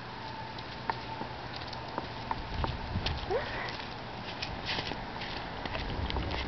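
A small dog's footsteps on a concrete sidewalk, heard as scattered light ticks and taps of its claws. A low rumble comes in about two and a half seconds in.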